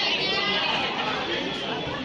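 Overlapping chatter of many voices from people gathered close by, with no single speaker standing out.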